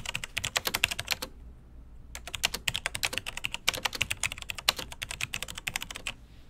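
Rapid typing on a computer keyboard: two runs of quick keystrokes with a pause of about a second between them.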